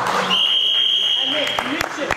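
A single steady high-pitched electronic buzzer tone lasting about one and a half seconds, heard over crowd chatter and scattered claps in a sports hall. It is the timing signal at the end of the wrestling bout, sounding as the score difference reaches 11 points.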